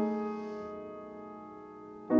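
Grand piano chord held and ringing, fading slowly, played slowly one chord at a time to listen to the balance of its notes.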